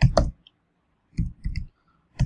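Computer keyboard keys being typed: a stroke at the start, then a quick run of three or four keystrokes a little over a second in.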